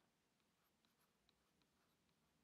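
Near silence, with a few very faint ticks of a stylus on a drawing tablet.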